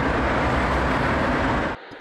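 Steady outdoor city noise with a deep rumble, cut off abruptly near the end.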